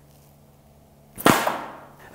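A single shot from a Cold Steel blowgun about a second in: a sharp, forceful puff of breath driving the dart out of the tube, trailing off in a short hiss.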